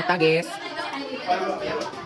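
Chatter of students talking over one another in a classroom, with one voice clearer than the rest in the first half second.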